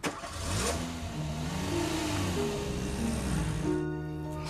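A vehicle engine revving, its pitch rising and falling, over a rushing noise. Steady music tones come in near the end.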